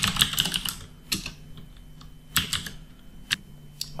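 Typing on a computer keyboard: a quick run of keystrokes at first, then short bursts of keys with pauses between.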